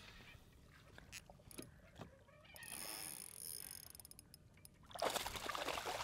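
Faint water sounds around the hull of a bass boat on a choppy lake, with a few light ticks early on and a louder rushing, splashy noise starting about five seconds in.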